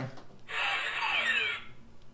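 An electronic sound effect from a website playing through a laptop's speakers: one burst of about a second, beginning about half a second in, with several sweeping pitches that rise and fall over each other.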